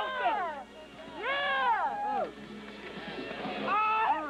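A voice in long, arching sung phrases: a short one at the start, a longer one from about one to two seconds in, and another beginning just before the end, with a quieter stretch between.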